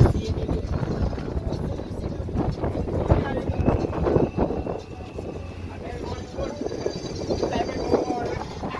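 Wind and sea noise on the deck of a boat under way on choppy water, with indistinct voices in the background.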